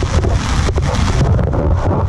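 Rain falling on an umbrella held just overhead, a dense spatter of small drop hits, with wind noise rumbling on the microphone.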